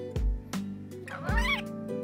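A budgerigar gives one short, squeaky, rising call about a second and a half in, over steady background music. Two dull low bumps come with it, one near the start and one with the call.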